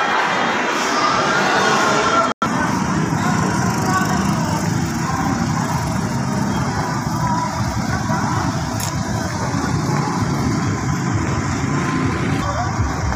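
Restaurant crowd chatter for about two seconds, broken by an abrupt cut. Then a steady outdoor street hum of passing traffic with distant voices.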